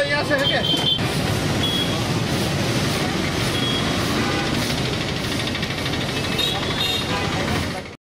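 Steady outdoor noise of passing road traffic, with people talking in the background.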